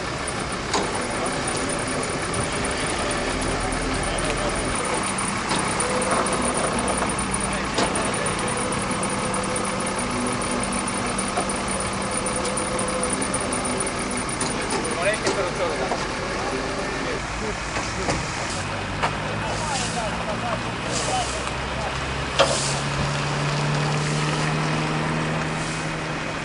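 Flatbed tow truck's engine running steadily while a crashed car is loaded, with voices of people standing around and a few short knocks late on.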